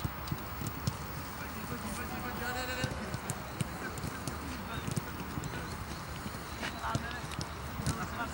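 Footballs being kicked on a grass pitch, irregular thuds from several balls at once, mixed with players' footsteps and distant shouts across an open stadium.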